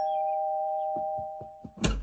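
Two-tone doorbell chime ringing out, its two notes held together and fading away. A few soft clicks follow, then a louder thump near the end.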